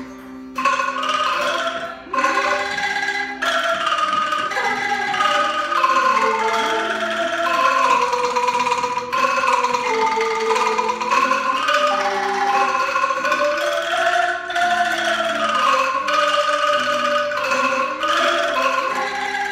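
Angklung ensemble, tuned bamboo tubes shaken on their frames, playing a melody together. The music starts suddenly about half a second in.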